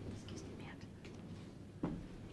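Faint, low voices talking quietly away from the microphone, with a sharp click shortly before the end.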